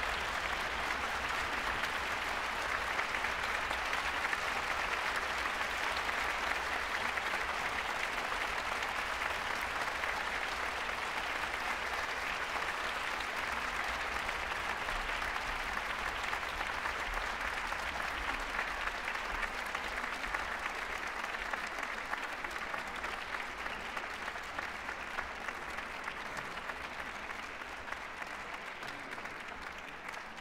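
Audience applauding in a large concert hall, a dense, even clapping that eases off gradually over the last several seconds.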